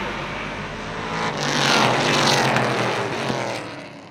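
A pack of stock cars racing past on a paved track: the engines build to a loud pass about a second and a half in, their pitch falling as they go by, then fade away.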